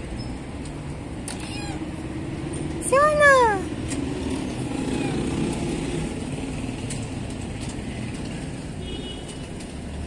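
A cat meows once about three seconds in, a single call that rises then falls in pitch, over a steady rumble of traffic.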